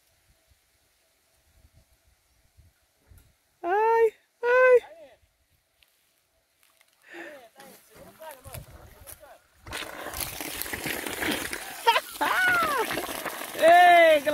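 Water gushing out of the outlet of a newly installed standpipe shower, starting suddenly about ten seconds in as a steady spraying rush. This is the line's first test run, fed from a raised water tank.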